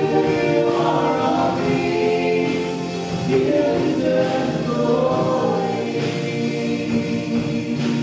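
A live worship band playing a contemporary Christian song, with a woman singing the lead into a microphone over acoustic and electric guitars, piano and drums.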